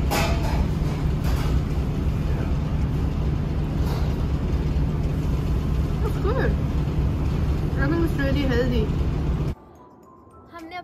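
A steady low mechanical hum, with faint voices in the background, cuts off suddenly near the end.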